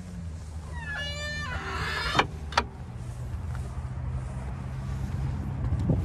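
Wind buffeting the microphone as a steady low rumble. About a second in there is a short rising squeal, then two sharp clicks just after two seconds.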